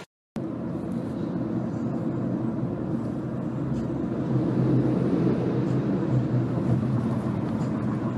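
Steady low rumble of a moving vehicle heard from inside its cabin, growing a little louder about four seconds in.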